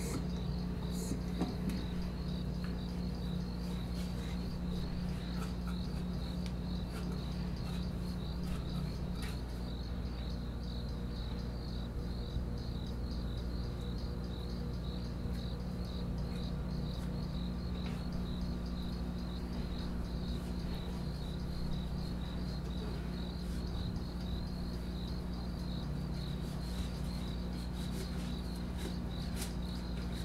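Crickets chirping steadily in a high, rapidly pulsing trill, over a low steady hum.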